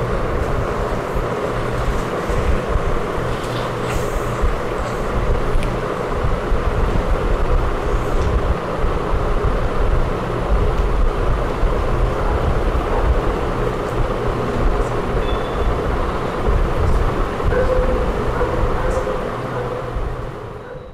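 Steady, loud rumbling background noise with no speech, and a few faint clicks and knocks scattered through it.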